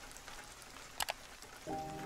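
Faint steady rain hiss, with two quick clicks about a second in and a soft held musical tone coming in near the end.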